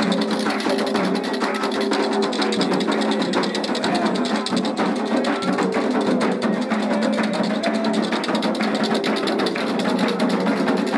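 Candomblé ritual music: fast, steady hand drumming on atabaque drums with a group chanting over it.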